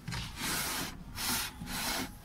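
A glass pane scraping as it is slid along the wooden frame of a rabbit hutch, in three short rubbing strokes.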